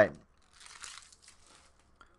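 Soft crinkling rustle of trading-card packaging being handled, starting about half a second in and lasting about a second.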